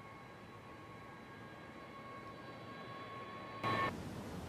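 KC-10 Extender tanker's turbofan engines at taxi: a steady, distant jet hiss with a thin high whine. Near the end a short, louder rush of noise cuts in and the whine stops.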